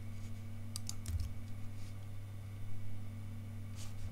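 A few light clicks of computer keys: a quick cluster about a second in and one more near the end, over a low steady hum.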